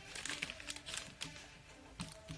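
Foil wrapper of a Pokémon booster pack crinkling in the hands as it is opened, a few short crinkles mostly in the first second.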